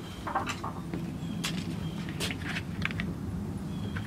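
A few light clicks and knocks as hard plastic digester parts are handled, over a low steady hum.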